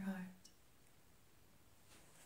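A softly spoken word trails off, a single faint click follows about half a second in, then near silence: room tone in a small room.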